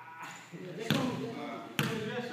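Two basketball bounces on a hardwood gym floor, a little under a second apart, with men's voices underneath.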